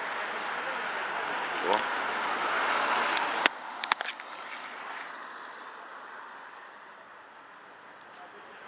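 City street traffic noise that cuts off sharply about three and a half seconds in with a click, followed by a few clicks of the camera being handled and fainter street noise fading away.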